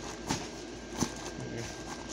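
Steady whir of an inflatable lawn decoration's built-in blower fan, keeping it inflated, broken by two sharp knocks of handling noise about a third of a second and a second in.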